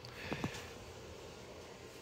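Quiet room tone with a faint low hum, broken by one faint, brief sound about a third of a second in.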